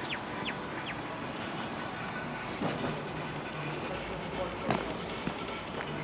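Outdoor street ambience: a steady background hum with a few short, falling bird chirps in the first second and a few short knocks around the middle.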